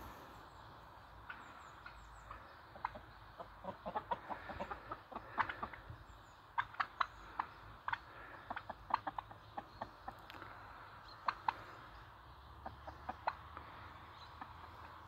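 Chickens clucking in many short, sharp calls, scattered throughout and busiest through the middle.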